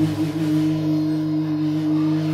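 A chord on an acoustic guitar ringing out, held steady and unwavering in pitch.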